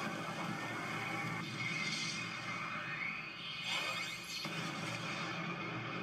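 Anime fight-scene soundtrack playing: background music with whooshing sound effects and a few rising and falling sweeps.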